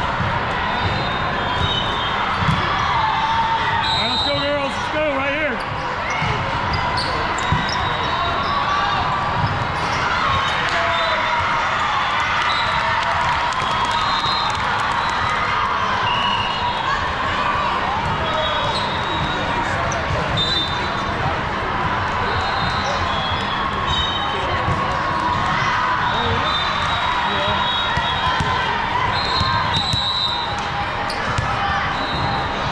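Volleyball match in a gym: a steady din of many voices, with frequent thuds of balls being hit and bouncing on the court.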